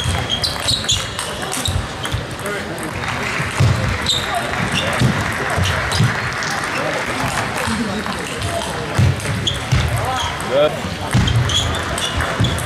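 Table tennis rally: the ball clicking off the bats and the table in short, irregular knocks, in a reverberant sports hall.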